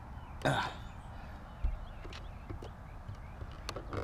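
Faint plastic handling noises as fingers pry at the back of a car's side mirror glass, with a sharp click near the end as the glass's retaining clips snap loose.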